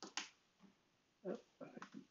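Faint computer keyboard keystrokes: a few scattered key clicks, a small cluster near the start and several more in the second half, as a terminal command is entered and retyped.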